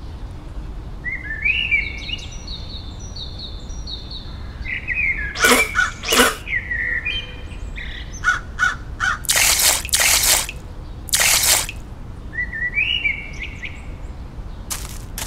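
Birds chirping in short repeated phrases, with several short, sharp bursts of noise in the middle.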